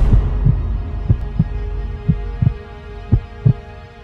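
Heartbeat sound effect in a film score: four double low beats, about one pair a second and growing weaker, following the decaying tail of a deep cinematic hit, over a sustained drone.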